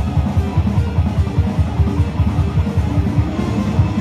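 Electric guitar played live through an amplifier over a backing track: a dense, unbroken run of quick notes, heaviest in the low register.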